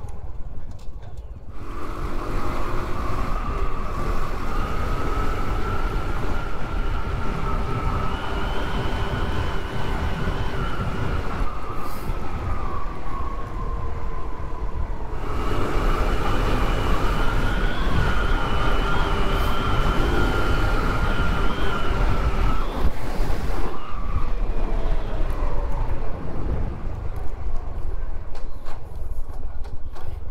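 Honda CT125 Trail's small single-cylinder engine under way, its whine climbing slowly as it pulls and dropping back twice, about a third of the way in and again in the last third. Wind rumbles on the microphone throughout.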